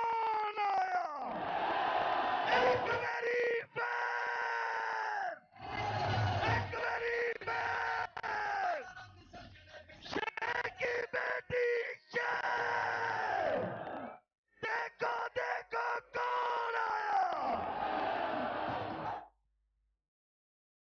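A man's voice shouting long, drawn-out slogans over a public-address system, several calls each sliding down in pitch at its end, amid crowd noise. The sound cuts off abruptly shortly before the end.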